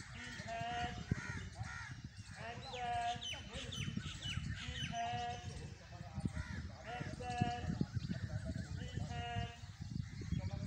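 Crows cawing again and again, a short harsh call every second or two, with a run of quick high chirps from other birds about three seconds in.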